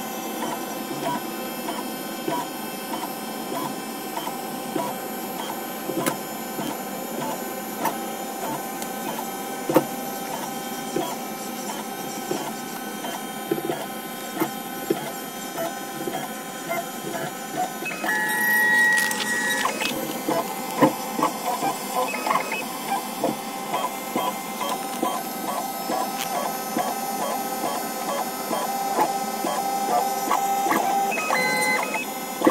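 Large-format DIY 3D printer printing in ABS: its Nema23 stepper motors whine in steady tones with frequent light ticks as the carriage moves the extruder back and forth laying infill. About two-thirds of the way through, a short, higher whine stands out for a couple of seconds.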